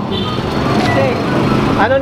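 A motor vehicle engine running close by on the street, a steady low rumble, with faint voices under it and a spoken word near the end.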